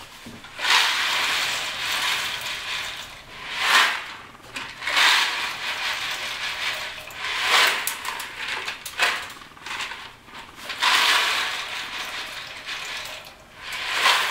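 Dry elbow macaroni rattling as it is poured out of a large container into a pot of boiling water, in about five separate pours.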